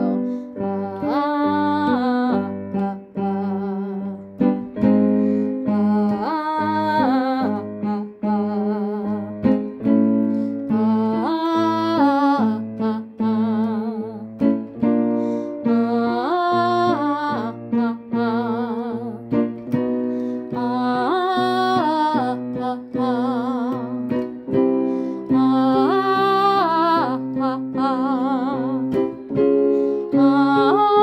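Vocal warm-up sung on the vowel 'ah' to the scale-degree pattern 1-5-3-1-1-1, starting on the upbeat, over an instrumental accompaniment. The phrase repeats about every five seconds, with vibrato on the held notes.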